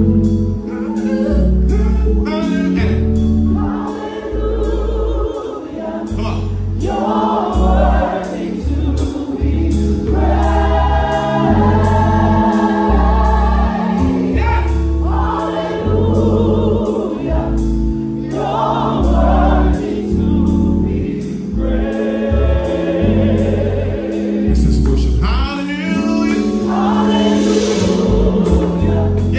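Gospel choir singing together in phrases of a few seconds, over sustained low instrumental accompaniment.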